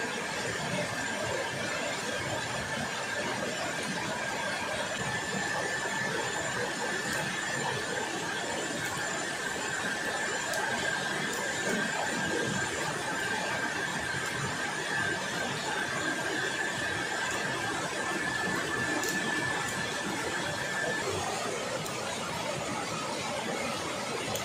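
A steady high-pitched whine held on one pitch for about twenty seconds, cutting off near the end, over a steady rushing noise. The camper wonders whether it is a kuntilanak.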